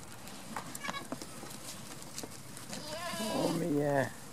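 A goat bleating: one long, wavering call in the last second and a half. It is preceded by a few light clicks about half a second to a second in.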